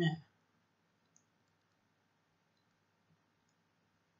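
The last syllable of a spoken word, then near silence with a few faint, isolated clicks of a pen stylus tapping a tablet while handwriting is entered.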